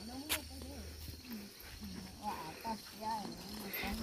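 Faint, distant voices of people talking, over a steady high buzz of insects, with one sharp click about a third of a second in.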